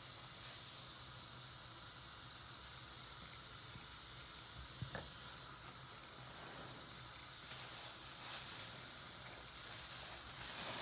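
Soapy sponges squeezed and handled in thick bubble-bath foam, the foam crackling and squishing, over a tap running steadily into the water. A single sharp click about five seconds in.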